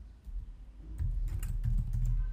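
Computer keyboard typing: a quick run of keystrokes, mostly in the second half.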